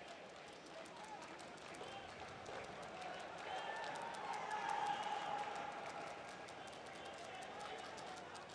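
Stadium crowd noise at a field hockey match: a steady hubbub of many voices that swells around the middle and then eases.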